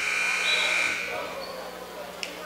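A referee's whistle blown once, a long high blast that fades out over about a second and a half, stopping play.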